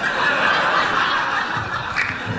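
Live audience laughing together, an even wash of crowd laughter.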